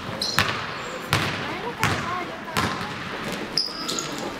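A basketball being dribbled on a hardwood gym court, about five bounces spaced evenly, with short high squeaks from sneakers on the floor between them.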